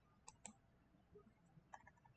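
Faint clicks of a computer mouse over near silence: a pair of clicks about a third of a second in and another pair near the end.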